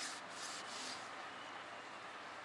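Cloth rag rubbing over an Isuzu 4JA1 diesel piston as it is wiped clean, a few scrubbing strokes in the first second, then softer.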